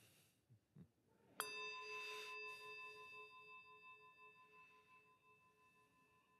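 A small metal bell struck once about a second and a half in, its ringing tone of several pitches fading slowly over the following seconds.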